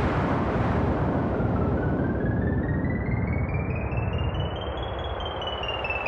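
Electronic intro of a grime track: a dense rumbling noise wash whose hiss fades, under a synthesizer tone that climbs in small steps and then starts stepping back down about five seconds in.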